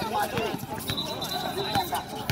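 Voices of basketball players and onlookers shouting and chattering over one another, with scattered sharp knocks of the ball and shoes on the hard outdoor court. A thin high tone is held for about a second in the middle.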